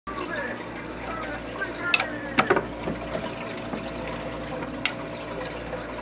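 Aquarium filter running with a steady hum and trickling water, with a few sharp clicks, two of them about two and a half seconds in and one near five seconds.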